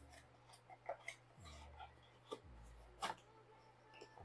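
Faint handling of a cardboard box opened by hand: light rubbing and scraping of the flaps, with a few soft clicks and knocks as a packed power adapter and its cable are slid out. The sharpest click comes about three seconds in.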